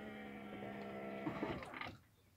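Electric RV awning motor humming steadily as the awning retracts, stopping about one and a half seconds in, with a brief clatter as the awning closes.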